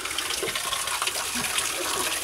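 A steady rushing noise, even and unbroken.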